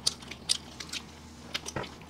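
Close-miked eating: people biting and chewing fried chicken, a quick run of short, sharp wet mouth clicks and smacks, about six in two seconds.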